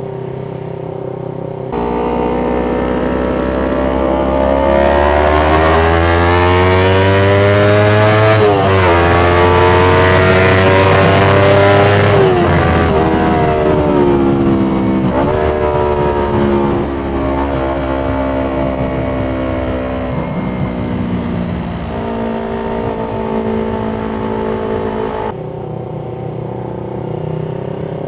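Yamaha MT-25 parallel-twin engine under way, its pitch climbing as it accelerates and dropping back at two upshifts, then running lower and steadier at cruise. Wind rush rises with the speed.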